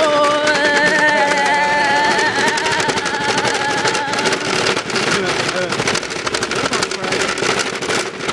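Shopping cart wheels rattling in a fast, continuous clatter as the cart is pushed at speed over brick pavers. A long, drawn-out 'whoa' cry rides over the rattle for the first four seconds or so.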